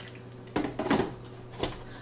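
Hard plastic knocks and clunks as a countertop blender's jug is handled and seated on its motor base: a few sharp strokes about half a second in and one more near the end. The motor is not running.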